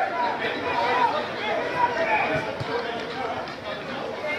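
Several people's voices carrying across an open football pitch, calling out and talking over one another during play, with a few clearer shouts in the first second and about two seconds in.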